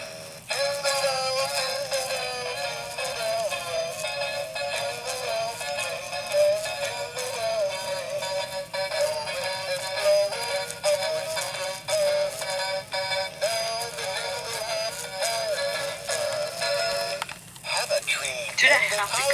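Gemmy Dancing Douglas Fir animated Christmas tree singing its built-in song through a small speaker, thin and tinny with no bass. The song starts about half a second in and stops about a second before the end.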